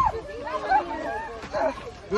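Raised voices and short, high cries in a scuffle with police, amid a protester being carried and dragged away.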